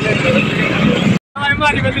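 Voices over a steady vehicle engine rumble. The sound cuts out briefly a little over a second in, then resumes as riding in the open back of a moving truck, with engine and wind noise under the voices.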